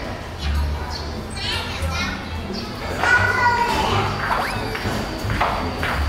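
A child's high voice and other voices, over low thumps from the camera being carried.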